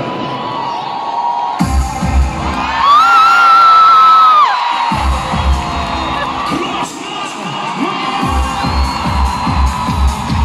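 Live pop-dance music played loud through an arena PA, heard from among the audience: a deep kick-drum beat comes in under a second and a half in and drops out briefly twice. The crowd cheers and shouts, and a long high voice holds a cry for about a second and a half, the loudest sound here.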